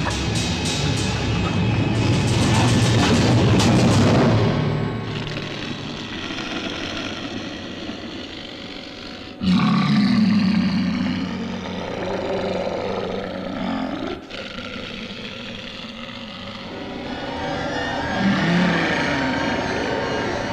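Film soundtrack of dramatic music mixed with sound effects, with no dialogue. The sound is dense and loud at first, thins out, then jumps back up abruptly about nine and a half seconds in, and changes abruptly again about fourteen seconds in.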